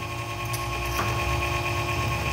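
Steady hum and whir of a running computer ATX power supply, with a couple of light clicks about half a second and a second in as a multimeter is handled.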